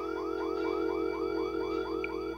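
Electronic security alarm going off: a rapid rising chirp repeating about five or six times a second over a steady held tone.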